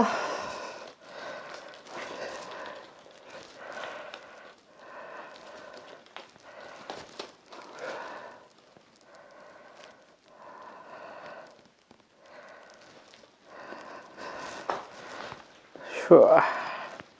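Football-boot laces being pulled tight through the eyelets: soft, repeated rustles, about one every second or so.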